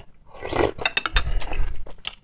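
Light clicks and clinks of tableware being handled at the table, starting with a short rustle and running on as a quick, uneven series of small clicks in the second half.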